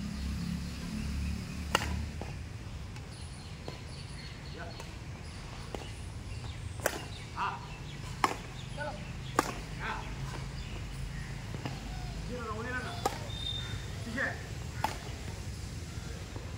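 Badminton rackets striking a shuttlecock during a rally: six sharp pings, one to four seconds apart. Brief shouts from players and a low steady rumble are heard underneath.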